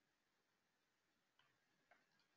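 Near silence, with two very faint short clicks about a second and a half in and just before the end.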